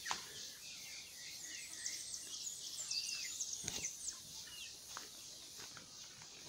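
Faint high chirping of small birds: a cluster of quick twittering calls from about one and a half to four seconds in. Two soft knocks come near the start and about three and a half seconds in.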